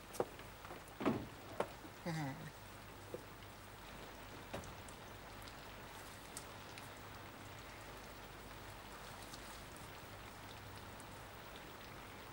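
Faint, steady rain, with a few soft clicks and rustles from album pages being handled. A brief murmur of a woman's voice about two seconds in.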